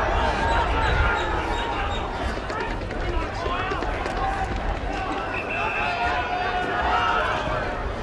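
Crowd at an Australian rules football match shouting and calling out, many voices overlapping with a few drawn-out yells, over a steady low rumble.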